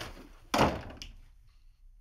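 A door shutting with a thud about half a second in.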